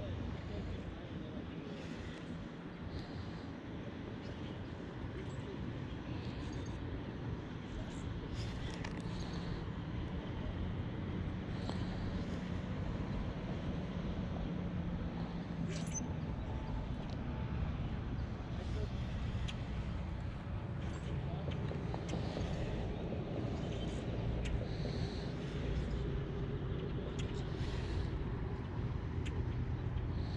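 Steady low rumble of distant road traffic, with a few faint, short high clicks and chirps scattered through it.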